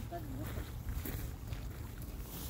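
Wind rumbling on the microphone, with footsteps on a gravel path. A brief voice-like sound comes near the start.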